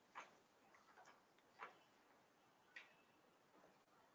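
Near silence, broken by three faint, short clicks about a second apart.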